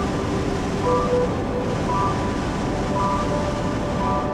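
Hot air balloon's propane burner firing overhead in one long, steady blast, with music playing faintly beneath it.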